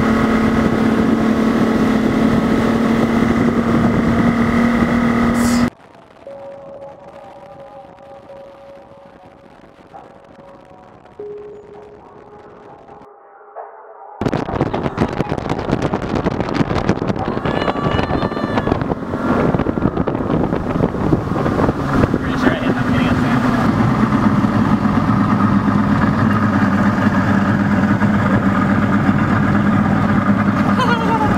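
Boat's outboard motor running steadily at speed; it cuts off abruptly about six seconds in to a much quieter stretch. A loud, noisy stretch returns about fourteen seconds in, with a steady motor hum settling in again over the last several seconds.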